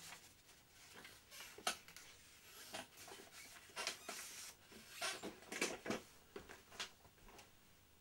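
Faint, irregular clicks and rustles of small items being handled, about one or two a second, busiest in the middle.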